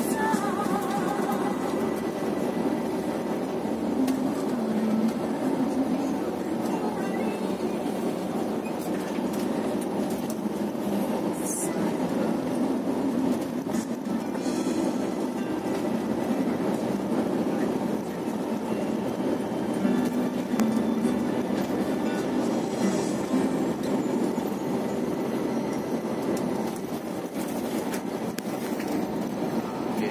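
Inside a moving bus: steady engine and road noise while driving, with music playing over it.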